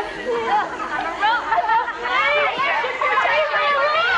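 A group of teenage girls' voices shouting, laughing and chattering over one another in a mocking chant.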